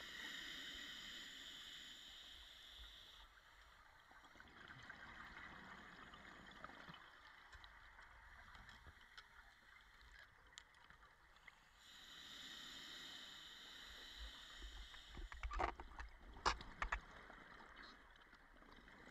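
Scuba diver breathing underwater: two long breaths through the regulator, each a few seconds of hiss, over a low bubbling wash. Several sharp clicks come near the end.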